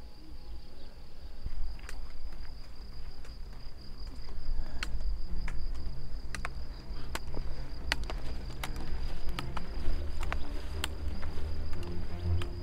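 Steady high-pitched chirring of crickets in the meadow grass. From about two seconds in there are sharp clicks of trekking-pole tips striking the dirt track, roughly two a second. Soft music comes in from about the middle.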